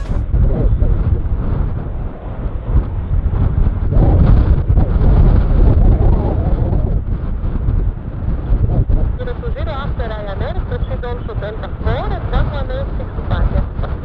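Low, uneven rumble of an Airbus A319-100's jet engines on the runway, heavily buffeted by wind on the microphone. From about nine seconds in, voices talk over it.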